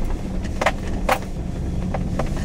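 Truck engine running with cab road noise while driving slowly over a rutted dirt track, heard from inside the cab, with a few sharp knocks and rattles.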